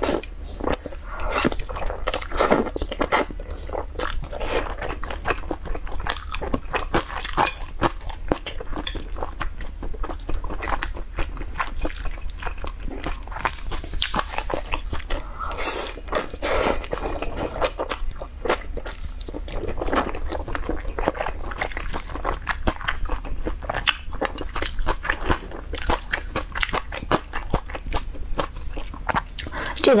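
Close-miked eating of wide mianpi noodles: slurping strips of noodle and chewing, a dense, irregular run of short mouth clicks and smacks.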